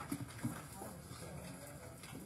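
Indistinct murmur of several people talking in a wood-panelled meeting room, with two sharp knocks in the first half-second.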